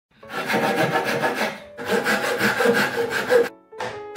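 Fine-toothed hand saw cutting through a softwood block in quick, even strokes: two runs of sawing with a short break about halfway, stopping shortly before the end.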